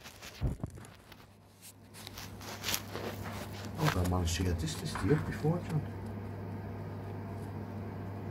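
A few sharp clicks and handling knocks, then a steady low hum sets in about two seconds in, with a brief mumble of voice partway through.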